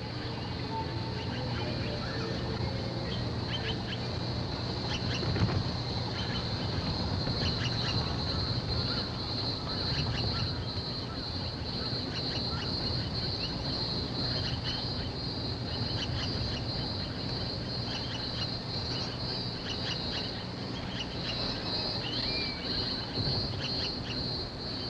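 Taiwan blue magpies giving short, harsh calls again and again, over a steady high, pulsing buzz.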